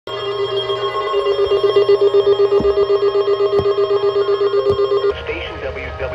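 Electronic alert tone from a weather radio, pulsing rapidly with a few faint clicks, that cuts off about five seconds in. A quieter, wavering sound, voice or music through the radio, follows it.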